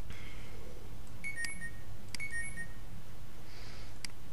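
Two short electronic beeps about a second apart, each a quick two-note chirp stepping down in pitch and starting with a click, over a steady low electrical hum.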